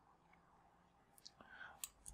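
Near silence: room tone, with a faint short sound in the second half and a small click near the end.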